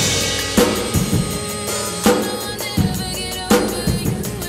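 Gretsch drum kit played in a slow R&B groove, with snare and bass drum hits and cymbals and a crash at the start. It is played along with the recorded song, whose bass line runs underneath.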